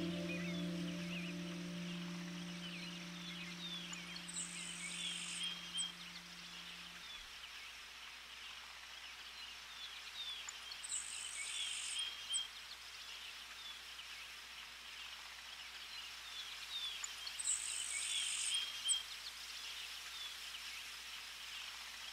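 Faint outdoor nature ambience: many small bird chirps, with a high, buzzy call about a second long repeating roughly every six and a half seconds. The last held chord of soft background music fades away over the first seven seconds.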